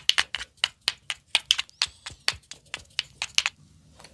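A rapid run of about twenty sharp clicks, roughly five a second, made by the barber's hands or tool during the head massage; they stop suddenly about half a second before the end.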